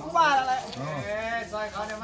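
Human voices speaking, with drawn-out vowels and a long held tone in the second half.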